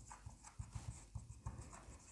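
Marker pen writing on a whiteboard: faint, quick irregular taps and scratches of the pen strokes.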